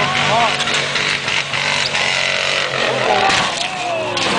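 Pickup truck engine running with a steady low drone under a loud rush of crowd noise, with people shouting near the start and again near the end.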